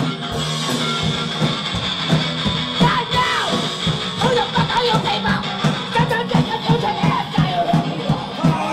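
Live hardcore punk band playing loud and fast: distorted electric guitar, bass and pounding drums, with the vocalist yelling into the microphone from about three seconds in.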